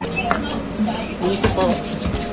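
Hands rubbing briskly together, working in hand sanitiser as an infection precaution, with faint voices behind.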